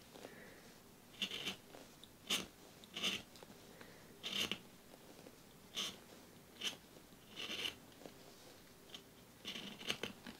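Craft knife whittling the wood of a Holbein white coloured pencil by hand: about a dozen short, faint cutting strokes, roughly one every second, at irregular intervals.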